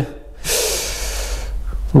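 A long breathy hiss of air, like a forceful exhale or blow close to the microphone, starting about half a second in and lasting about a second and a half.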